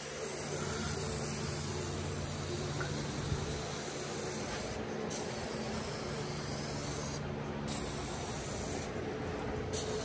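Aerosol can of adhesion promoter hissing as it is sprayed over a bumper in long passes, broken by three short pauses, about five, seven and a half, and nine seconds in.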